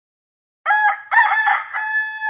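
Rooster crowing: a cock-a-doodle-doo that starts about two-thirds of a second in, with a few short syllables and then a long held final note.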